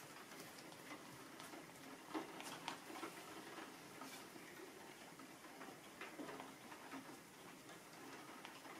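Faint, irregular ticks and light scrapes from the edge of a cut plastic credit card dabbing and dragging thick acrylic paint across paper.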